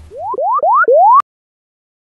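Cartoon sound effect: four quick rising whistle-like glides, one after another, cut off suddenly a little past halfway.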